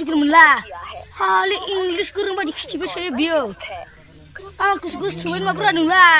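Boys' high-pitched voices talking in short bursts, with a quieter pause about four seconds in, over a thin steady high drone of insects.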